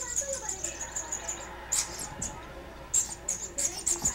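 A squeaky toy macaron squeezed over and over, giving quick runs of high squeaks, with a lull in the middle.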